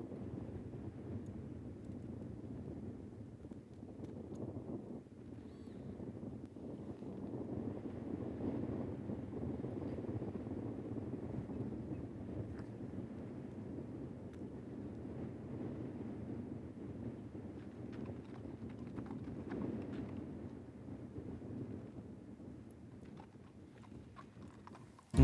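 An Icelandic horse's hooves stepping on a dirt track at a walk, irregular and faint, over wind buffeting the microphone.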